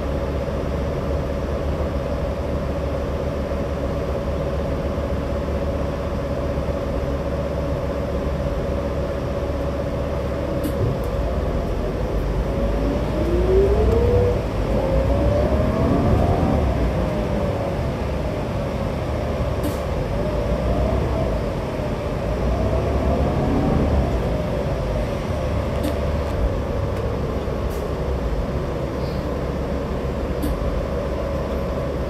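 Cabin sound of a New Flyer Xcelsior XD60 articulated diesel bus under way: a steady low drivetrain drone with a steady hum. Just under halfway through, the engine note rises as the bus accelerates, wavering up and down for a few seconds. A second, smaller rise and waver comes about two-thirds of the way in.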